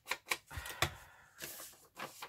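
Paper scraps being picked up and handled on a craft table: a few sharp clicks and taps with soft paper rustling between them.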